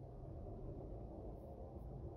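Quiet room tone: a faint, steady low hum with no distinct event.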